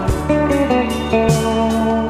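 Instrumental passage of a 1980s Brazilian pop song: a guitar playing held notes over a bass line and a steady drum beat, with no vocal.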